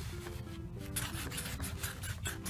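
Sharpie marker scribbling on paper in quick scratchy back-and-forth strokes, heavier in the second half, over soft background music.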